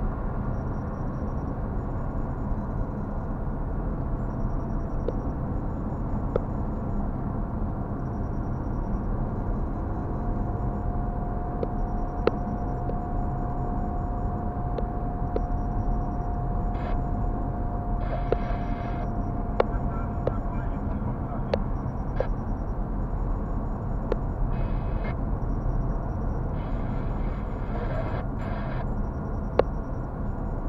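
Steady road and engine noise of a car driving, heard inside its cabin, with scattered light ticks and clicks.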